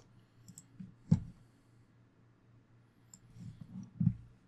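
A few computer mouse clicks, the loudest about a second in and another near the end, over a faint steady low hum.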